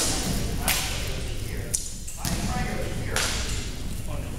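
Indistinct voices in a reverberant gymnasium, with four brief, sharp swishing noises at irregular intervals.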